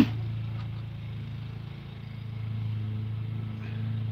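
A vehicle engine idling with a steady low hum, and a brief click right at the start.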